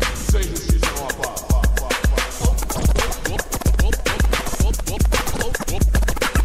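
Hip hop beat with a steady heavy kick drum about twice a second, played over a DJ turntable setup, with short record scratches cut in over it.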